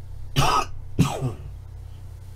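A man coughing twice, two short harsh coughs about half a second apart, with his hand at his mouth.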